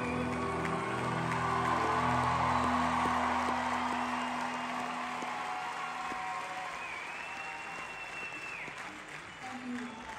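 Large concert audience applauding at the end of a song, while the band's last held notes fade out in the first few seconds; the applause swells, then slowly dies away. Near the end, one long high tone sounds over it.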